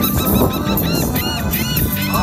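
Gulls calling: a quick run of short, arched cries, several in a second, over music.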